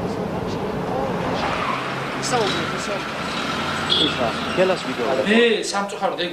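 Overlapping voices of several people talking at once over a steady noisy background, with one voice coming up louder near the end.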